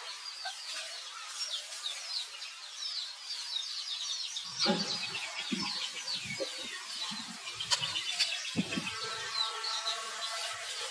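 Many short, high chirping animal calls running on throughout, with rustling and soft thuds of movement from about halfway in. Near the end comes a drawn-out, pitched squealing call.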